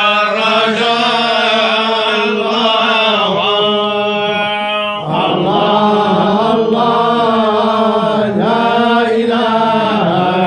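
A group of men chanting a religious chant in unison, a melismatic line that rises and falls, with one long held note a few seconds in.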